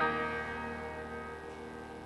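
Piano chord struck at the very start and left to ring, fading slowly away.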